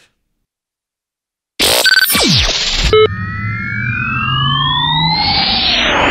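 About a second and a half of dead silence, then a synthesized radio jingle of sound effects. It opens with a sudden loud burst and a steeply falling glide, then layered tones slide up and down while a noisy whoosh rises near the end.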